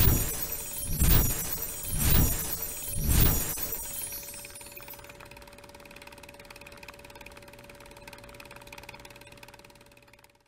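Logo-sting sound effects: four loud, mechanical-sounding hits about a second apart, each swelling and dying away, followed by a long fading tail over a steady hum.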